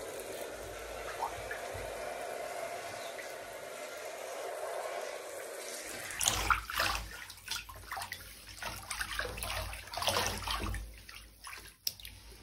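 Shower spray pouring steadily onto wet clothing, then from about six seconds in irregular splashing and sloshing of water.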